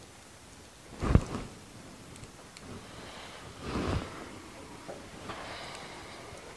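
Quiet room tone broken by a single low thump about a second in and a short rustle a little before the middle, from a phone with a clip-on thermal camera being handled.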